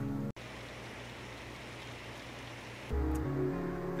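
Background music that cuts off suddenly about a third of a second in, leaving a steady, even hiss with no pitch; the music comes back near the three-second mark.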